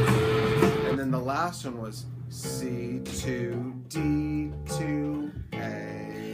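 Fender electric bass played with a recording, the music dense for about the first second and then thinning to held bass notes with a voice gliding over them.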